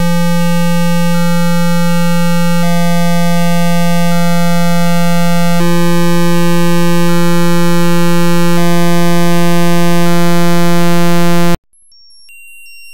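Computer-generated one-line symphony (bytebeat) running in ChucK: loud, buzzy, steady tones over a low drone, with the upper notes changing every few seconds, the whole growing slightly louder. It cuts off abruptly about a second before the end, and a quieter, different pattern of high tones starts.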